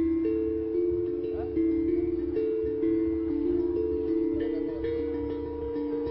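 Steel tongue drum, made from a recycled butane gas cylinder with tongues cut into it, played with mallets. It plays a slow melody of ringing notes, about two a second, each left to ring into the next.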